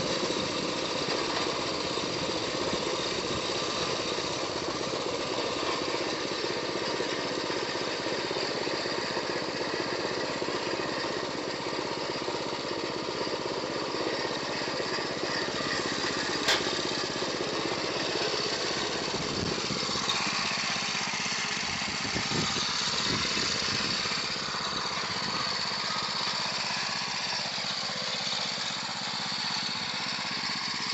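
Harbor Freight Predator 212 cc (6.5 hp) single-cylinder OHV engine running on a homemade mini chopper as it is ridden, steady throughout. It eases off somewhere past the twenty-second mark, with one sharp click a little before.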